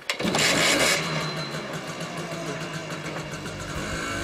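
Small motorbike engine starting with a short loud burst in the first second, then running steadily at idle.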